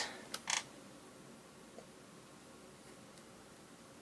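Quiet room tone with a single sharp click and a brief hiss about half a second in.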